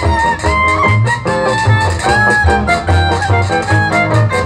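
A live jazz band playing an instrumental passage, a violin carrying the melody over guitar, saxophone and drums with a steady beat.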